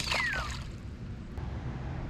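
A small splash as a released bluegill drops back into the pond water, right at the start, followed by quiet outdoor background.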